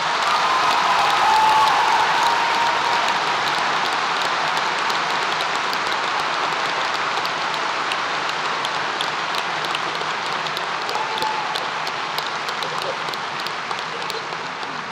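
An audience applauding in a large hall, swelling in the first second or two and then slowly tapering off.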